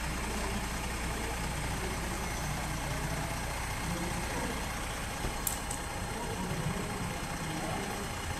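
Heavy diesel dump trucks idling, a steady low rumble.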